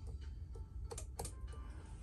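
A few light, sharp clicks about a second in, over a low steady hum inside the van's cab.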